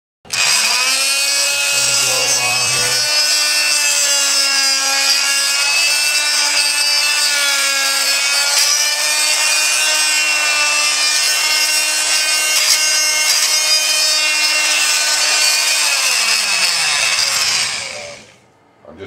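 Electric angle grinder running with a steady high whine. The whine wavers slightly and dips briefly about two seconds in, then winds down and fades near the end.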